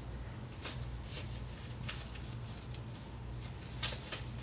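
Disposable gloves being peeled off the hands: a few faint, short rustles and snaps of thin glove material, the sharpest just before the end, over a steady low room hum.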